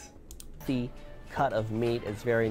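A few quick, light clicks, then a man's voice over background music.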